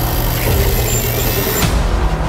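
Horror-trailer sound design: a loud, dense rumbling noise layered with music, which cuts off sharply near the end.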